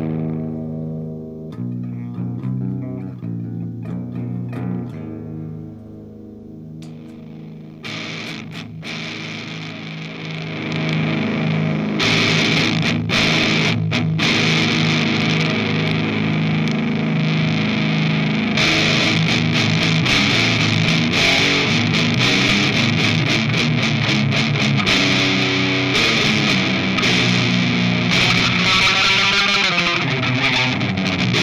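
Electric guitar (a Vantage with a Seymour Duncan Invader bridge pickup) played through a 5150 Iconic amp's clean channel. It starts with fairly clean single notes, then from about twelve seconds in plays heavy riffs through the Bad Trip RAT-style distortion pedal, thick and saturated, getting louder again near the end.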